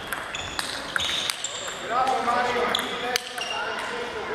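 Table tennis balls clicking on tables and bats, many scattered irregular hits, each with a short high ping.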